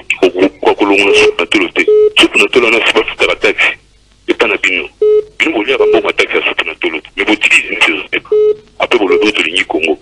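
A caller speaking over a telephone line, the voice thin and narrow. Several short, steady beeping tones cut in between phrases.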